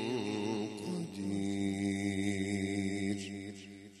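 A man's voice chanting one long held note in Arabic devotional style. The note wavers in ornaments at first, then holds steady and fades out near the end.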